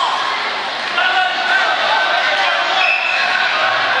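Spectators and coaches at a wrestling mat shouting and calling out over one another in a steady, unintelligible din of many voices.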